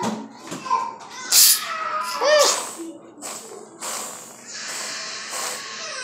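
Aerosol can of whipped cream spraying: a short hiss about a second in, then a longer steady hiss in the second half. A child's voice cries out briefly in between.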